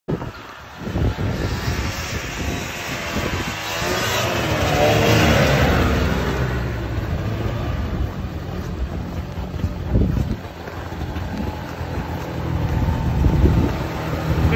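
Snowmobile engine coming closer and driving past. It is loudest about four to six seconds in, where its pitch bends as it goes by, then it runs on more quietly.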